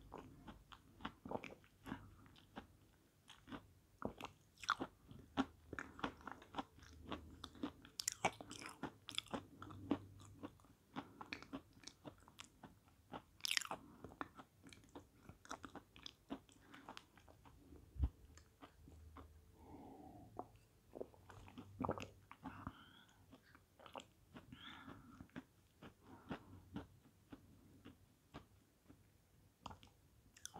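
Close-miked chewing of a mouthful of edible chalk: a steady run of small dry crunches and mouth clicks, with a few louder crunches.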